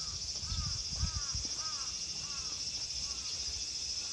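Steady high-pitched chorus of insects such as crickets, with a bird giving a run of about six short arched call notes, roughly two a second, that stops about three seconds in. Soft footsteps on pavement thud underneath.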